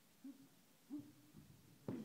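Faint, quiet pad-work session: two short low voice sounds, then a single sharp smack near the end, typical of a kick or punch landing on a Thai pad.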